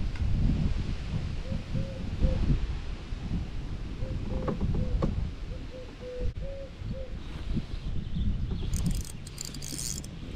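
A series of short hooting notes, all on about the same pitch and a few a second, in two runs, over a low rumble. Near the end a spinning reel ticks quickly as its handle is turned.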